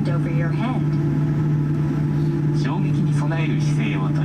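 Steady low hum inside a Boeing 787-8 airliner cabin during pushback, with a voice from the onboard safety video over it twice.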